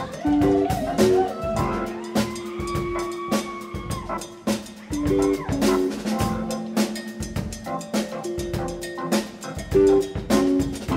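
Live rock band playing an instrumental passage: a drum kit keeps a busy beat under held and sliding guitar and bass notes.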